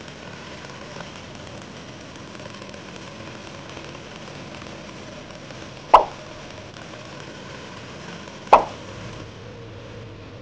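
Electric cotton candy machine running, a steady whirring hiss from its spinning head as sugar floss is wound onto a stick. Two short, loud pops break in, about six and eight and a half seconds in.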